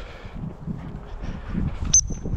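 Wind and movement rumbling on the microphone, then near the end a single short, shrill pip on a gundog whistle, a steady high tone that tails off quickly: the turn signal for a spaniel hunting cover.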